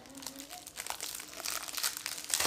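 Clear plastic wrapping on a box of chewing gum crinkling as it is pulled off and handled: a quick, irregular crackle.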